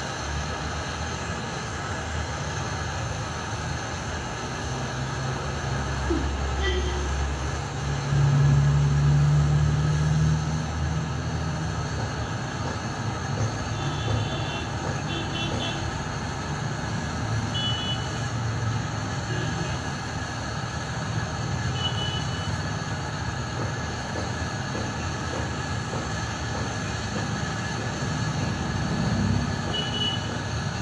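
Steady background mechanical rumble with a low hum, swelling louder for about two seconds around eight seconds in, with a few short high-pitched beeps scattered through the middle.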